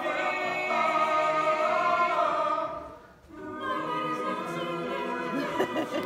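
Vocal group singing a cappella in long, held chords with vibrato. The singing breaks off for a moment about halfway through, then resumes.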